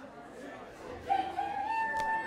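A person's long, high holler or whoop, held for about a second and slightly rising, starting about halfway in, over low crowd chatter.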